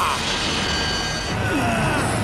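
Cartoon energy-blast sound effect: a dense, steady rushing rumble as a giant monster's beam attack hits. A falling tone comes in near the end, over background music.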